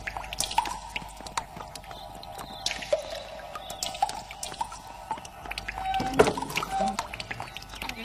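Soft background music holding a steady note, with scattered light clicks throughout. A brief murmur of a voice comes about six seconds in, after the note ends.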